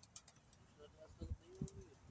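Domestic pigeons cooing faintly, a low coo held for about half a second past the middle, with a few faint clicks near the start.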